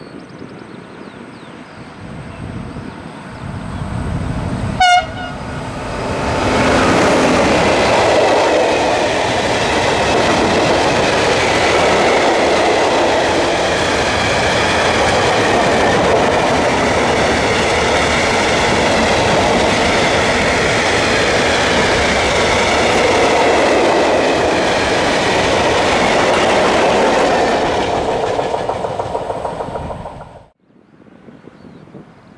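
A freight train approaches with one short horn blast about five seconds in. A long rake of tank wagons then rolls past close by, a loud steady noise of wheels on rails that lasts over twenty seconds.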